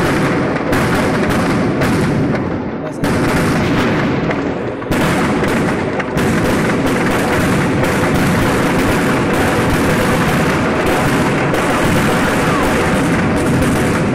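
Firecrackers packed inside a burning effigy going off in a dense, continuous volley of rapid bangs and crackles. It steps up in loudness about three and again about five seconds in, then holds at full intensity.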